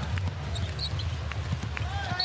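A basketball bouncing on a hardwood court over the steady low murmur of an arena crowd.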